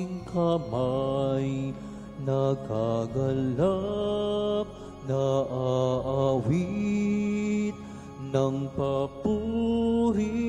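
A slow sung melody: a voice holding long notes that bend and waver in pitch, over sustained accompanying chords.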